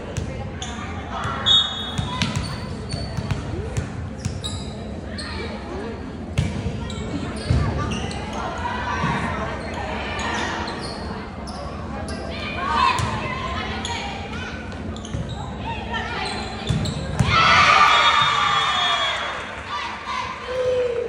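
Volleyball rally in a reverberant gym: the ball struck several times between scattered calls from players. About seventeen seconds in, the loudest sound is a burst of shouting and cheering as the point ends.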